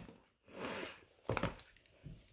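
Quiet handling sounds of a ballpoint pen and a Bible's pages: a brief soft rustle, then a single light knock.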